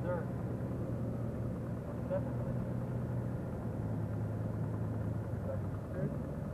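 A car driving, heard from inside the cabin: a steady low drone of engine and road noise.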